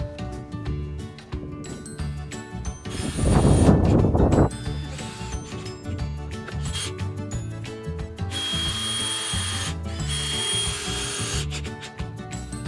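Cordless drill driving screws into a framed wooden wall in two runs, each a second or so of high whine, near the end. A loud rattling clatter comes about three seconds in. Background music plays throughout.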